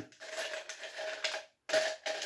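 Ice cubes clinking and clattering against each other and the sides of a stainless-steel ice bucket as tongs dig through them: a run of short clicks, with a louder clink near the end.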